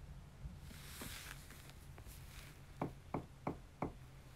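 Four light knocks, evenly spaced about a third of a second apart, near the end, over a faint steady hiss.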